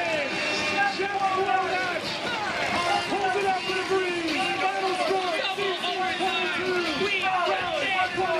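Excited play-by-play commentary from a sports live stream, with crowd noise behind it, as the winning score goes in.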